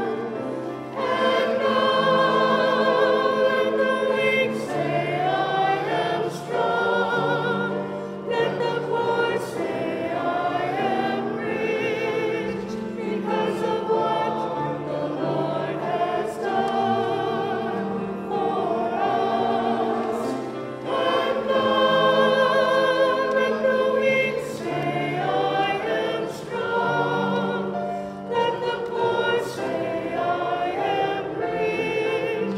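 A small mixed choir of men's and women's voices singing a hymn together, in long held phrases with short breaks for breath every several seconds.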